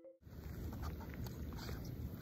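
Faint outdoor background noise with a low rumble and a few light rustles, typical of wind buffeting a phone's microphone. It starts a moment after a brief gap of silence.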